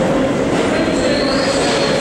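Kawasaki R160B New York City subway train pulling into the station, its steel wheels running loudly on the rails. A thin high wheel squeal comes in just under a second in and rises slightly.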